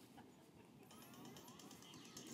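Near silence: faint room tone. The slideshow's intro sound, meant to play at this slide change, does not come through.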